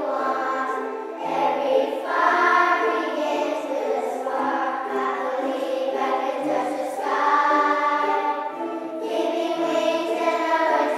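Children's choir singing a song in unison, accompanied by strummed ukuleles and wooden Orff xylophones played with mallets, which give a low bass line of held notes.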